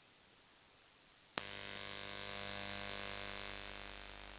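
Electrical mains hum and hiss from the microphone and sound system. It starts with a click after about a second and a half of dead silence and holds steady, easing off slightly near the end.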